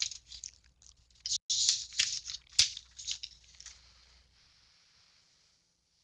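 Rustling, crinkling noises with two sharp clicks about two and two and a half seconds in, dying away after about four seconds.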